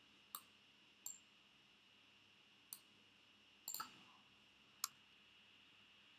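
Computer mouse clicking: about six short, sharp clicks at uneven intervals, two in quick succession near the middle, over a faint steady high-pitched whine.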